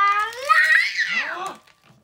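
A child's drawn-out wordless vocal sound, rising slowly in pitch and then wavering down, dying away about one and a half seconds in.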